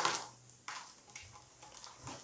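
A voice trails off at the start, then the room is nearly quiet with a few faint, sharp clicks spread through it.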